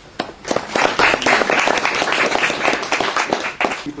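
Audience applauding, swelling within the first second and dying away near the end.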